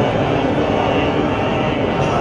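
Buddhist monks chanting together into microphones, heard as a steady, unbroken drone in which the individual pitches blur together.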